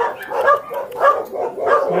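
A dog barking in a quick series, about four short barks spaced roughly half a second apart.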